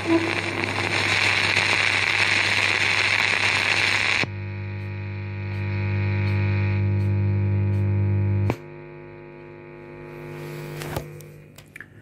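Electrical hum and hiss. A noisy hiss over a low hum cuts suddenly after about four seconds to a buzzing hum of many steady tones. That drops after about eight and a half seconds to a quieter, lower hum with a few clicks, fading near the end.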